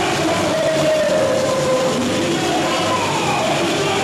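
A samba-enredo sung live by a large crowd over a samba percussion band, the voices holding long notes that slide slowly in pitch over a dense wash of drums and crowd noise.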